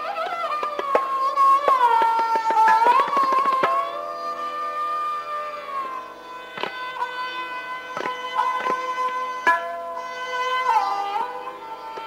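Sarangi bowed in a Hindustani classical rendition of raag Kaunsi Kanada: long held notes joined by slow sliding glides between pitches. A few sharp tabla strokes fall in the second half.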